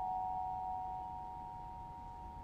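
A vibraphone chord ringing on, its metal bars sounding a few clear held notes that fade slowly with no new strikes.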